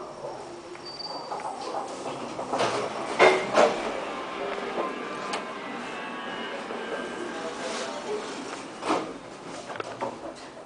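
Inside a KONE Monospace 700 traction elevator car during a run: knocks and rattles from the car and its doors over a steady background noise. The loudest knocks come about three seconds in, with another near the end.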